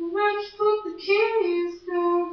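A young woman's unaccompanied singing voice into a handheld microphone, a string of short sliding notes with no clear words and a brief break near the end.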